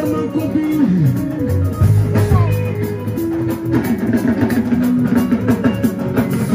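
Loud live band music with electric guitar and drum kit, and a man's voice over the sound system.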